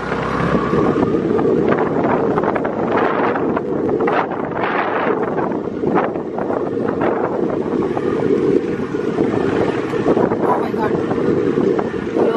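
Wind buffeting the microphone of a camera carried on a moving motorbike, over the running engine and road noise on a rough dirt track.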